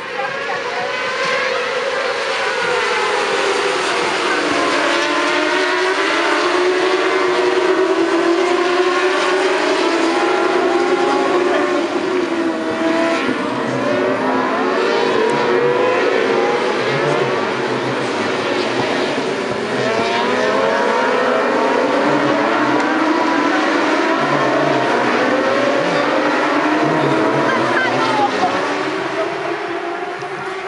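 A pack of 600cc supersport racing motorcycles at full race pace, many engine notes overlapping, each rising in pitch through the gears and dropping back at every shift. The sound builds in the first second or two, stays loud, and eases off near the end.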